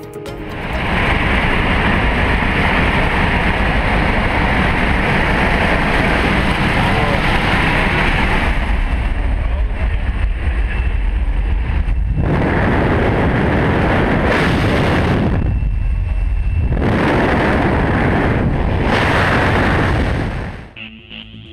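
Loud rushing wind and aircraft engine noise through the open exit door of a jump plane in flight. The roar comes in about a second in as the door opens, then dips briefly twice in the second half.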